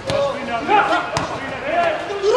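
A football kicked twice, sharp thuds about a second apart, amid players shouting calls to each other on the pitch.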